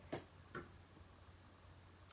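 Near silence: room tone, with two faint short ticks in the first half second.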